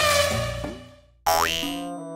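Cartoon sound effects in an outro jingle: a falling boing-like tone that fades out over the first second, then a sudden quick rising sweep a little past halfway, settling into held synth notes.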